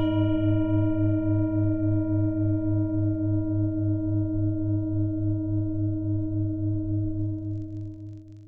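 A singing bowl struck once, ringing on as a long, steady, layered tone. Its low hum wobbles in a fast, even pulse, and it fades slowly toward the end.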